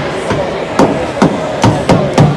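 A steady beat of sharp thumps, about two a second, ringing in a hockey arena, like fans pounding on the rink glass or a drum keeping time.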